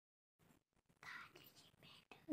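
Near silence, with faint breathy, whisper-like voice sounds from about a second in.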